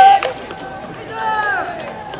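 A fungo bat hits a baseball once with a sharp crack just after the start, as a loud sustained shout from the players ends. About a second in, another shouted call falls in pitch.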